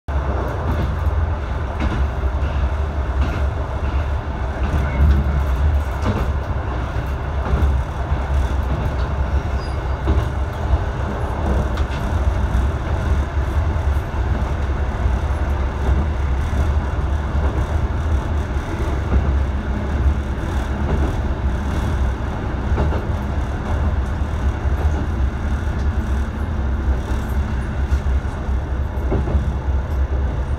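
Diesel railcar running along the line, heard from inside the cab: a steady low engine rumble with the noise of the wheels on the rails.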